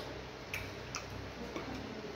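A few short, soft wet clicks of eating fufu and vegetable soup by hand: chewing and lip smacks, over a steady low hum.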